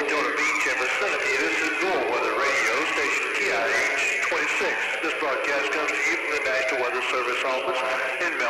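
A voice sample filtered to sound like a radio broadcast, narrow and thin, with no drums under it, in a neurofunk drum and bass track. It is the kind of radio announcement that reads out a frequency in megahertz.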